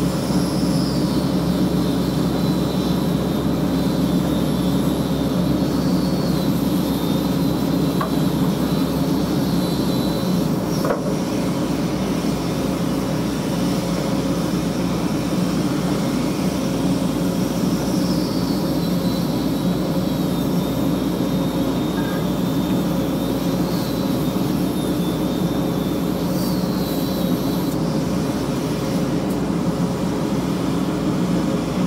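Excavator's diesel engine running steadily, heard from inside the cab, with a faint high whine wavering in pitch over it.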